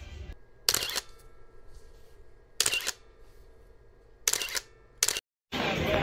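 Camera shutter clicks, four of them, spaced about one to two seconds apart, over a faint quiet background.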